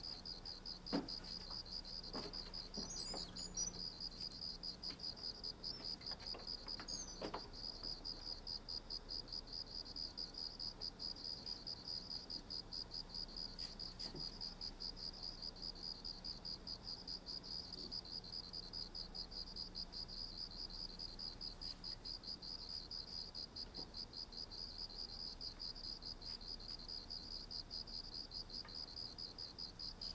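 Crickets chirping steadily in a fast, even pulse, with a few short knocks in the first several seconds, the loudest about a second in.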